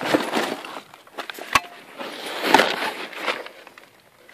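Rustling and scraping from handling the torn-open couch's upholstery and springs, in two stretches, with a single sharp click or knock about a second and a half in.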